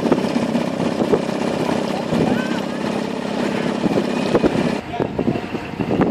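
Motorboat engines running under the chatter of a crowd of voices; the sound thins out about five seconds in.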